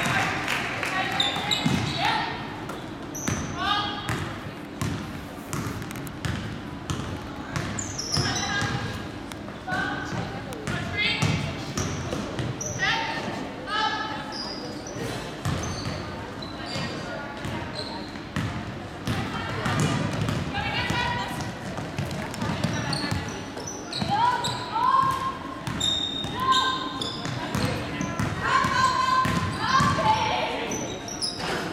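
Basketball game sounds in a gymnasium: a basketball bouncing on the hardwood court, with players and spectators calling out throughout.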